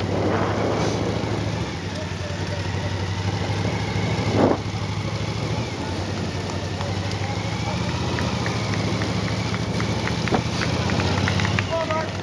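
Steady low engine hum from the vehicle carrying the camera as it paces a runner along the road. Near the end, a run of quick sharp claps from spectators.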